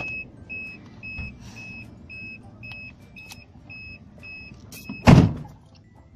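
A car's warning chime beeps steadily, about twice a second, while a door stands open, then stops as the car door is shut with one loud thud about five seconds in.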